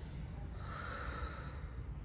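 A person slurping instant ramen noodles off a fork: one airy slurp lasting about a second, starting about half a second in.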